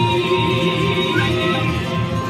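Live ensemble music: acoustic guitar playing, with long held melodic notes sounding above it.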